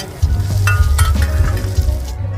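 Metal spatulas scraping and clinking on a flat-top griddle while food fries and sizzles in oil, with a couple of sharp clinks near the middle.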